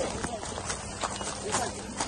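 Footsteps crunching on a gravel yard, a few irregular steps, over a steady low electrical hum from substation transformers.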